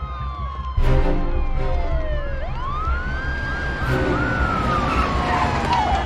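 Police sirens wailing in a film soundtrack: one long wail falls, sweeps back up and falls slowly again, while several shorter whoops overlap it. Under them runs film score music with pulsing low notes, and a loud hit comes about a second in.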